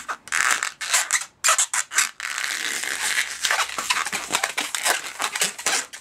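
Latex modelling balloon squeaking and rubbing under the hands as a bubble is squeezed off and twisted: a string of short squeaky rubs, then from about two seconds in a steady run of rubbing squeaks.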